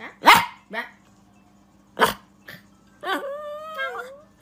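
Small white curly-coated dog barking in short, sharp yaps, then giving one longer drawn-out call about three seconds in.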